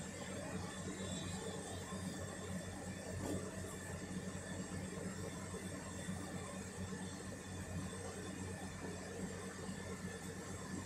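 A steady low hum and whir of a running machine, unchanging throughout.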